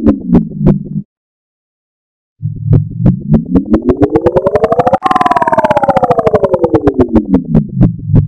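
Electronic logo sound effect played reversed, slowed and pitch-shifted: a rapidly pulsing tone that glides down and cuts off about a second in. After a silence it comes back low, glides up, jumps suddenly higher about five seconds in and glides back down.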